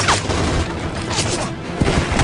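Loud film soundtrack of music mixed with action sound effects, with a sharp hit right at the start and another near the end.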